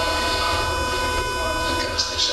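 An indistinct voice, away from the microphone, over a steady electrical hum and whine.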